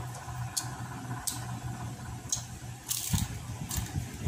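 Close-up eating sounds of crispy deep-fried pork belly (lechon kawali) being chewed: wet mouth sounds with short crackling crunches every second or so, the loudest just after three seconds in, over a steady low hum.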